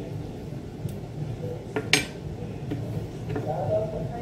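Metal spoon scooping kiwi flesh and knocking against a glass blender jar: a few light clinks, the sharpest about halfway through.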